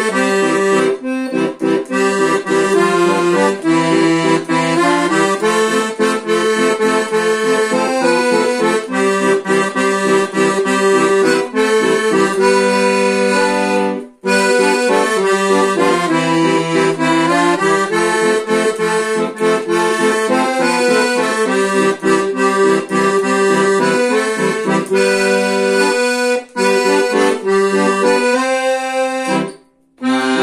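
Piano accordion playing a mazurka tune, a melody over sustained lower notes, with a brief break about halfway through and another just before the end.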